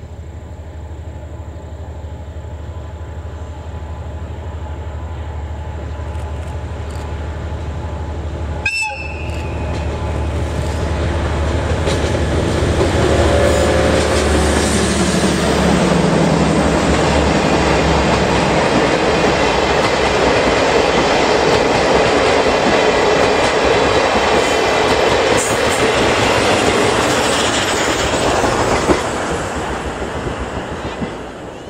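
A DE10 diesel-hydraulic locomotive approaches with its engine running, growing steadily louder. About nine seconds in there is a brief high toot. The engine's note slides as it passes, and a long train of old-type passenger coaches then rolls by loudly, wheels clicking over the rail joints, fading near the end.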